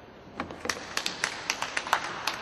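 Scattered hand-clapping from a few spectators: a short, sparse round of applause made of irregular sharp claps that starts about half a second in.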